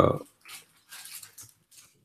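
A man's drawn-out hesitation sound that trails off just after the start, followed by faint soft clicks and near quiet.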